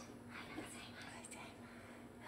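Soft whispering voice, speaking quietly in short breathy phrases.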